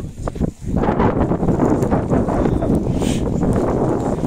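Loud rustling and buffeting on the camera's microphone as the camera brushes past a padded jacket, with wind on the microphone. It drops out briefly about half a second in, then runs on thick and unbroken.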